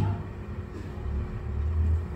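Low rumble with no words, swelling in the second half.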